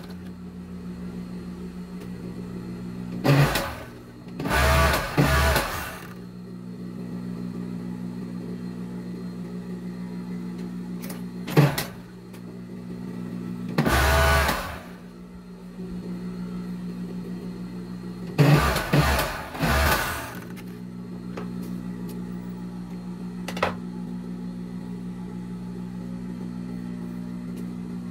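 Jontex industrial overlock (serger) machine with its motor humming steadily, run in several short bursts of stitching as it seams the fabric. There are about four runs, the longest in the first quarter and near two-thirds through, with a couple of light clicks between them.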